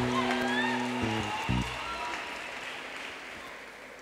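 A keyboard plays a few held chords, changing chord twice in the first second and a half, over congregation applause that fades steadily away.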